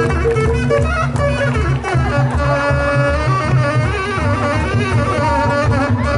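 Live band music with a steady low drum beat, about three beats a second, and a wind instrument carrying a wavering melody.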